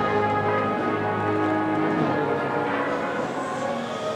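A brass band plays a Holy Week processional march, with sustained chords that ring out.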